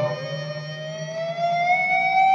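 Ibanez JEM electric guitar sustaining a single note whose pitch slides smoothly upward over about a second and a half, then holds.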